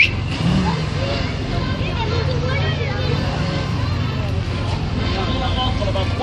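Steady low engine rumble from a line of old military jeeps idling, with scattered voices of people talking nearby. A short sharp rising squeak sounds right at the start.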